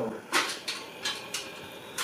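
A man's forceful hissing exhalations, about four sharp breaths with the first the loudest, as he strains through the last reps of a dumbbell set near failure.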